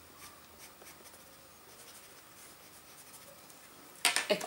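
Faint scratching of white pastel on black card: a series of short strokes laying in a highlight.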